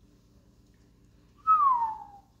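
A single loud whistled note, starting about a second and a half in and sliding down in pitch over just under a second.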